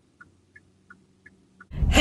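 A car's turn-signal indicator ticking faintly inside the cabin, about three ticks a second alternating between a higher and a lower click, over a low steady hum.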